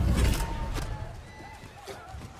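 Horses splashing through a river, with a loud rush of water in the first half second that dies down, faint horse whinnying, and music underneath.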